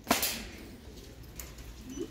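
A single short clatter just after the start, fading over about half a second, as a zip wallet is handled and drops into a wire shopping cart basket.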